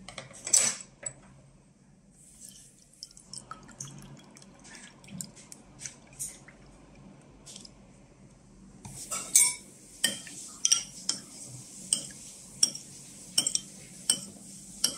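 A metal spoon stirring in a ceramic bowl, clinking against its side about twice a second through the second half. Before that come a sharp click near the start and softer scattered taps.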